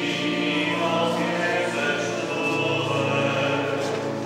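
Church choir singing slow, sustained chords of a liturgical chant, the chord changing about halfway through.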